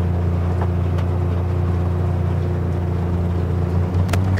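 John Deere Gator utility vehicle's engine running steadily as it drives along at an even speed, a constant low hum. The hum shifts slightly near the end.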